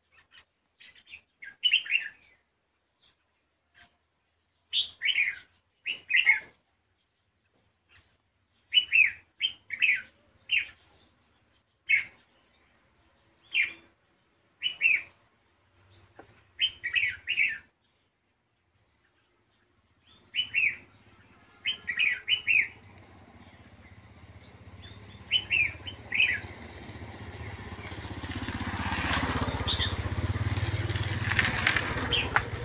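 Red-whiskered bulbul calling: short, sharp chirps in clusters of two or three, repeated every second or two. In the last third an engine grows steadily louder underneath them.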